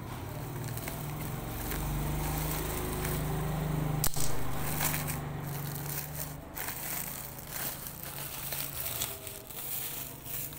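A woven plastic sack and its inner plastic bag crinkling and rustling as they are cut and pulled open, with one sharp snap about four seconds in. A low hum runs underneath for the first half.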